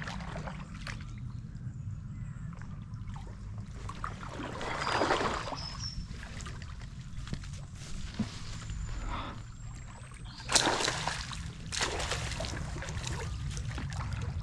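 Water splashing and sloshing in the shallows as a hooked pike of about 70 cm is brought in to the bank. The louder splashes come about five seconds in and again twice after ten seconds, over a steady low rumble.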